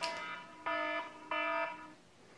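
Electronic beeper sounding three steady-pitched beeps, each about a third of a second long, about two-thirds of a second apart.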